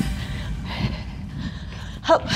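A woman breathing hard from the exertion of jumping lunges.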